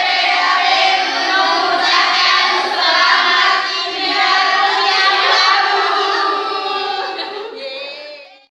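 A group of teenage girls singing together, loud and lively, their voices overlapping; the singing trails off near the end.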